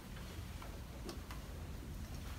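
A few light clicks and taps, about four in two seconds, in a quiet room: a person's footsteps walking across a carpeted floor.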